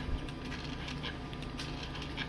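Light handling noise: a braided wiring loom and its plastic connector moved by hand on a foam mat, with a soft thump just after the start and a few faint clicks, over a low steady hum.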